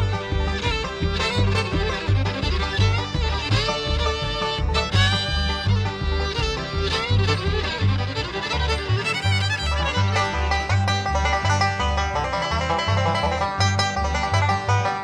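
A bluegrass band playing a fast instrumental live: a fiddle takes the lead over an upright bass keeping a steady two-beat, with five-string banjo and guitar in the band.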